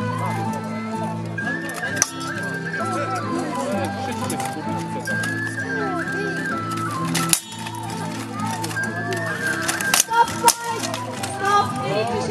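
Steel longswords striking each other in sharp, single clashes: once about two seconds in, then several more in the second half. Underneath runs background music with sustained low notes and a stepping melody.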